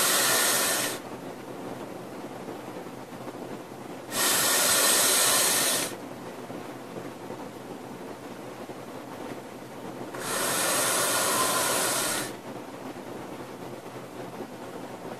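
Vaping on a sub-ohm Fishbone rebuildable dripping atomizer through a glass drip tip: three loud breathy rushes of vapour of about two seconds each, near the start, about four seconds in and about ten seconds in, with a faint steady hiss between them.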